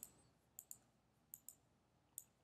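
Near silence with about five faint, short clicks from the computer as the lecture slide is advanced.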